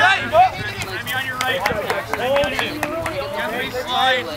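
Several players' voices shouting and calling out across the field, too indistinct to make out words, with a few short sharp taps in the first couple of seconds.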